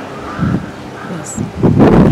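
Wind buffeting the microphone in low rumbling gusts, a short one about half a second in and a louder one near the end.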